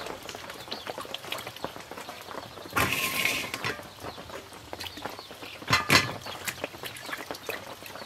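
Vegetables being washed by hand in a steel bowl of water: splashing, sloshing and knocks against the bowl, with the clatter of a plastic basket. A longer call-like sound about 3 s in and sharp knocks near 6 s.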